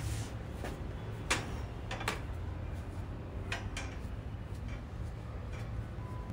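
A few light knocks and clicks as a person gets up from a chair and moves about, over a low steady rumble.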